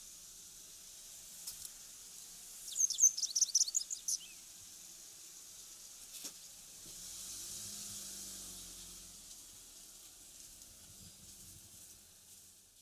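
Japanese wagtail calling: a quick run of high, sharp notes about three seconds in, lasting just over a second, over a steady background hiss.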